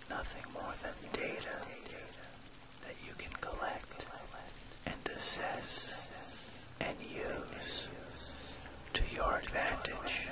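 A soft whispered voice speaking in phrases over a steady background of rain.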